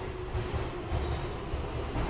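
Low, steady rumble of city background noise at night, with a faint hum above it.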